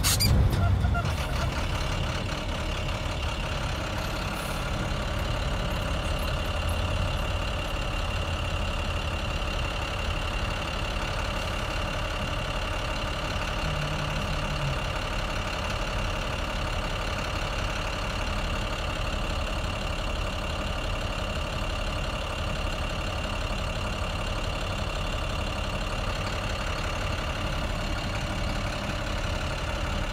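A vehicle's engine running slowly, heard from inside the cabin: an even low rumble with a thin, steady high whine over it, after a brief noise right at the start.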